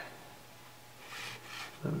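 Quiet room tone with a faint steady low hum and a brief soft rustle about a second in.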